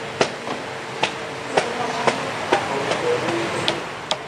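A series of sharp taps or knocks, about two a second, some stronger than others.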